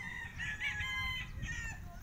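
A long, high-pitched call with a wavering pitch, lasting about a second and a half, over a low outdoor rumble.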